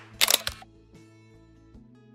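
A quick camera-shutter click sound effect over background music. The music then thins to a few quiet held notes.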